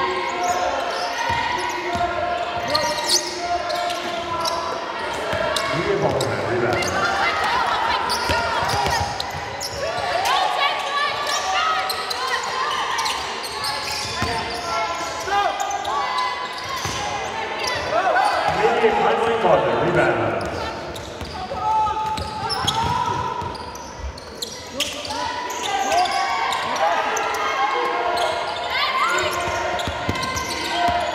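People's voices in a large, echoing sports hall during a basketball game, with a basketball bouncing on the wooden court.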